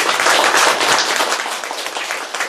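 Audience applauding, loudest in the first second and then tapering off.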